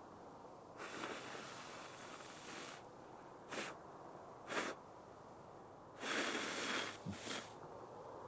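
A man blowing out breath in a series of exhales: a long blow about a second in, two short puffs, another long blow near six seconds, then a last short puff.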